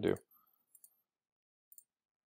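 Faint computer mouse clicks: two quick pairs of clicks about a second apart.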